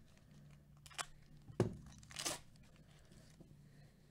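Foil wrapper of a trading-card pack being torn open: a sharp click, then a thump, then a short crinkly rip just after two seconds in.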